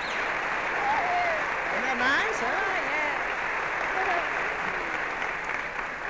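A large audience applauding steadily, with voices calling out over it, sounding muffled and narrow as on an old film soundtrack.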